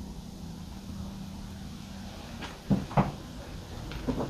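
Two short, sharp knocks about a third of a second apart, late on, over a low steady hum that fades out a little past halfway.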